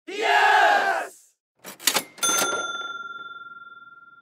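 An intro sound effect: a short shouted voice, then a few sharp clicks and a single bright bell ding that rings out and fades over about two seconds.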